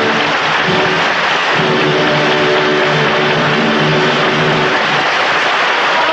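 Dense audience applause in a theatre, with a held chord of several steady notes sounding through it from about a second and a half in until near five seconds.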